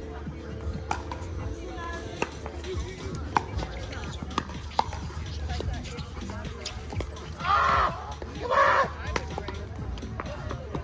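Pickleball paddles hitting a plastic ball during a rally: sharp pops a second or so apart, the sharpest about three and a half seconds in. Near the end come two louder rushing bursts about a second apart.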